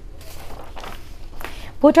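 Sheets of paper rustling and shuffling in hand, a few soft scrapes in a quiet studio. Near the end a woman begins speaking.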